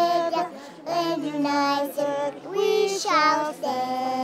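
A woman and a small child singing together unaccompanied, a few held notes, with the pitch swooping up about three seconds in.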